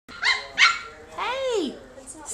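Old English Sheepdog puppies, about three or four weeks old, vocalising while playing: two quick high yips, then a longer call that rises and falls in pitch.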